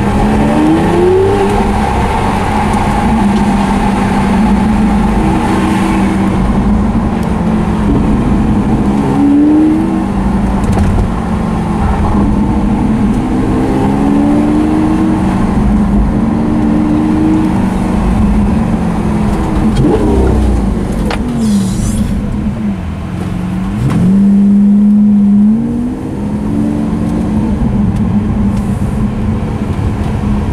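Lamborghini Aventador's V12 engine heard from inside the cabin, its revs repeatedly rising and falling as the car moves through traffic. The loudest stretch is a held high-rev pull about four-fifths of the way through.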